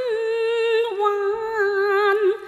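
Cantonese opera music: a single melodic line holds a long note without words, dipping slightly in pitch about a second in.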